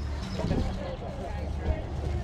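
Faint background voices of people talking at a distance, over a steady low rumble.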